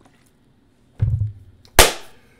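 Sounds of finishing a swig from a glass bottle: a low thump about a second in, then a loud, sharp hit near the end with a short rushing tail as the drink ends.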